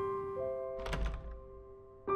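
Slow, soft piano music with one dull thunk about a second in, a door being opened.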